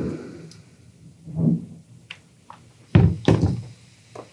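Steam iron knocking and thudding on a padded pressing board as a denim hem is pressed, with two heavy thuds about three seconds in as the iron is set down.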